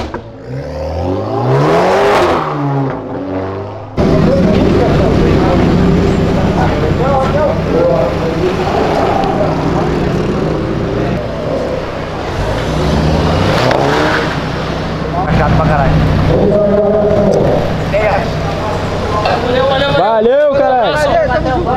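Car engines of cars driving out one after another. An engine revs up and down in the first few seconds. After a sudden change, a steady engine drone continues, with another rev rising around the middle.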